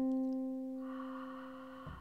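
A single keyboard note, struck once and fading away over about two seconds. It gives the starting pitch for the singer, who comes in on the same note just after.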